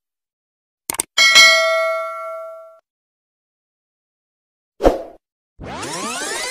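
Two quick mouse-click sound effects about a second in, followed at once by a bright notification-bell ding that rings out and fades over about a second and a half. Near five seconds a short thump, then music with sweeping rising and falling tones starts just before the end.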